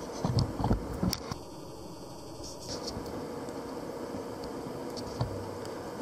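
Steady low background hum of a machine shop, with a few soft knocks and clicks in the first second or so.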